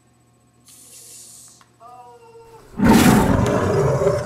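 A short hiss, a brief pitched cry, then a loud, rough animal-like roar starting near three seconds in, acted as a skunk attacking a box turtle.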